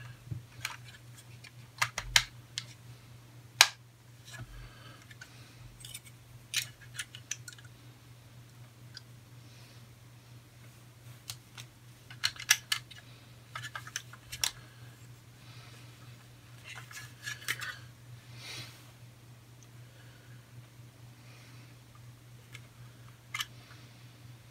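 Plastic parts of an Airfix QuickBuild snap-together car kit clicking and snapping as the modeller handles them and works a wrongly fitted part loose. The clicks come at irregular intervals, a few sharper than the rest, over a low steady hum.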